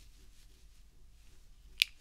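Quiet room tone, broken near the end by one short, sharp click.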